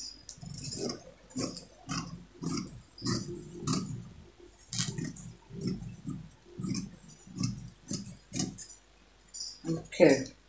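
Scissors cutting through printed fabric on a table, a steady run of snips about two a second, with a short pause near the end.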